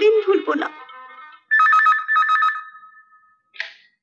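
Telephone ringing: a fast warbling trill between two tones, in two short bursts, followed near the end by a short clatter as the receiver is picked up.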